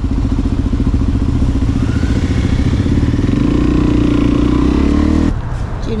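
Dual-sport motorcycle engine heard from the rider's seat, running at a low, pulsing idle, then rising in pitch as it pulls away about three and a half seconds in. The sound cuts off abruptly just after five seconds.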